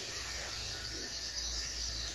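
Low, steady background noise with no distinct event: room tone.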